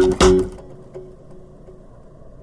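Background music on plucked guitar: a few quick notes, then a last note ringing out and fading after about half a second.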